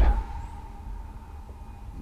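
A train horn sounding outside, one steady held note.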